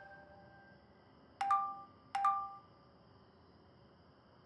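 Two smartphone notification chimes about 0.7 s apart, each a quick two-note ding stepping up from a lower to a higher note, announcing incoming messages.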